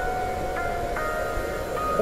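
Background music, a quiet stretch of long held notes.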